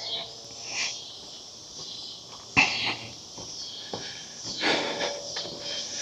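Steady chorus of insects in the trees, with a walker's breaths close to the microphone; two louder breaths stand out, about two and a half and five seconds in.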